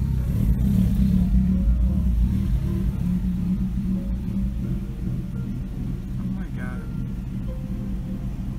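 Low, steady engine rumble of vehicles idling and creeping in city traffic, with faint muffled sounds over it.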